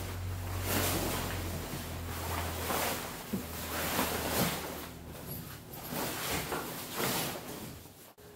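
A fabric boat cover being pulled and dragged over a boat, rustling and swishing in a series of strokes about one a second.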